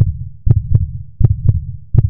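Heartbeat sound effect: a steady double beat repeating about every three quarters of a second, roughly 80 beats a minute.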